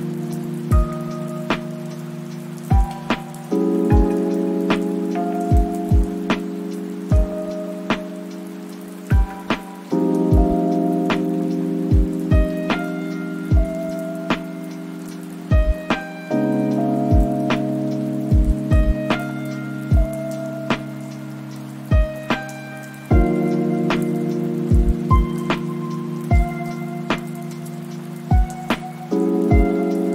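Lofi hip-hop track: soft sustained chords that change about every six and a half seconds, short melody notes above them and a sparse low drum beat, with a steady rain sound mixed in underneath.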